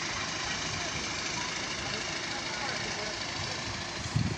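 Steady street ambience dominated by the low hum of car engines from traffic and the car park below.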